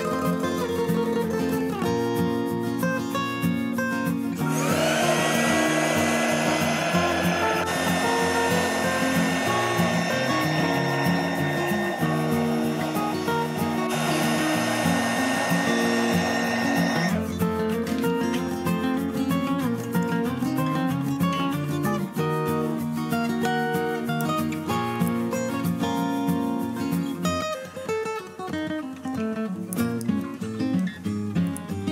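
Heat gun blowing hot air onto heat-shrink tubing over a small receiver's solder joints: it starts about four seconds in with a steady rush of air and a fan whine, then cuts off after about twelve seconds. Acoustic guitar background music plays throughout.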